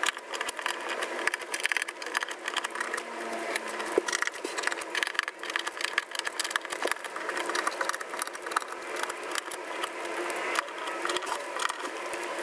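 Small sticky paper squares being peeled one after another off a plastic cutting mat and pressed together in the fingers: a quick, irregular run of small ticks and crackles.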